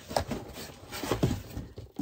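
Handling noise as a large cardboard shipping box is picked up and lifted: two bumps about a second apart, with rustling between them.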